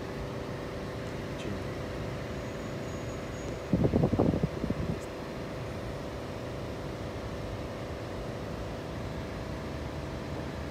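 Steady machine hum with a few constant tones, and a louder sound lasting about a second around four seconds in.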